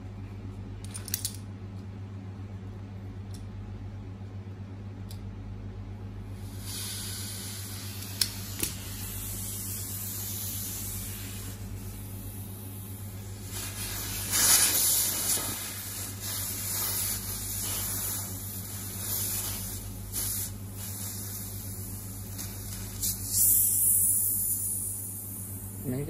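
Compressed air hissing out of a Cricket-style PCP air-rifle regulator as the pressure side of its test cup is unscrewed to bleed it down. The hiss starts about six seconds in, swells and fades a few times, and runs until near the end, over a steady low hum.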